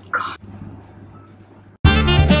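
A short disgusted vocal noise from a girl who has just sniffed a foul-smelling slime, then near the end jazz music with saxophone starts suddenly.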